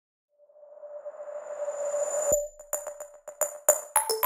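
Electronic background music opening: a held synth tone swells up with a rising rush for about two seconds, cuts off suddenly, then a quick electronic beat begins.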